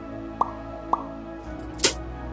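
Drops of water falling into water: two small plops, each a quick rising blip, then a louder, sharper splash near the end.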